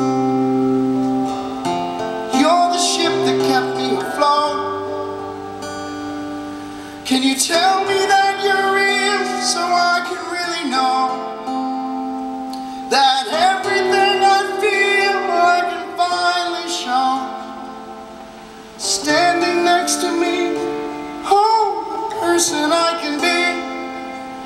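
Acoustic guitar played live, sustained chords ringing, with strong strummed phrases coming in about every six seconds and fading between them.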